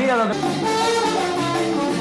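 Salsa band's trombone section playing held notes together over the rhythm section, coming in as a sung line ends about a quarter second in.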